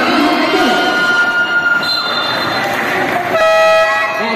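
Voices in a basketball gym, then a steady electronic buzzer that sounds for under a second near the end. It is the game-clock horn marking the end of the quarter.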